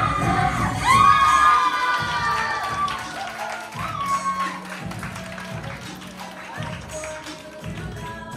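Group of children cheering and shouting, with clapping, over dance music. The cheering is loudest about a second in and then fades, leaving the music.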